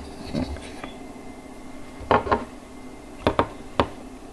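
Light clicks and knocks of a hard plastic toy playset being handled and set down on a table: a short cluster about halfway through, then three sharp clicks near the end.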